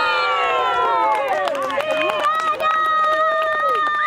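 Spectators and players shouting and cheering over a goal, several voices overlapping, with one long held shout in the second half.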